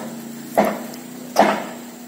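Two hammer blows about 0.8 s apart, from workers nailing down corrugated zinc (seng) roofing sheets, heard over a steady low hum.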